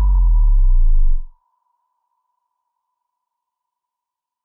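Outro sound effect: a loud, deep bass swell with falling tones that cuts off suddenly about a second and a half in, leaving a thin high ping that slowly fades away.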